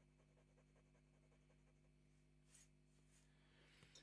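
Very faint scratching of the Conklin Endura fountain pen's steel medium nib drawn across grid paper, laying down a wide ink swatch; otherwise near silence.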